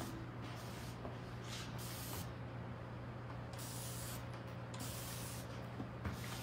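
Hand-held water spray bottle misting hair in several short hissing spritzes.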